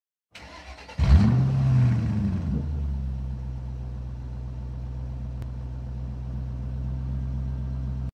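A car engine starting about a second in, revving briefly, then settling into a steady idle.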